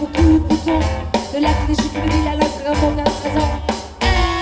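Live rock band playing an electric guitar and drum kit with a fast, driving beat of about five strokes a second over a deep bass.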